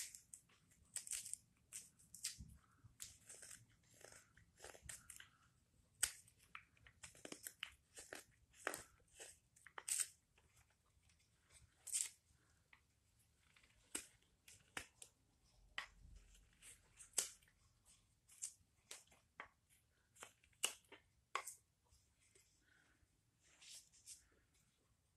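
Carving knife slicing shavings off the back of a wooden ladle bowl: a quiet string of short, crisp cuts at an irregular pace, taking down the axe marks in the rough-shaping stage.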